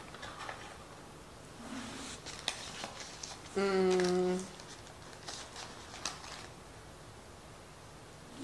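A woman's short, steady hummed "mmm" lasting about a second near the middle, among soft clicks and rustles of food being handled and eaten.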